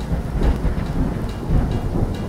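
Rain-and-thunder sound effect: a steady wash of heavy rain with a deep rumble of thunder underneath.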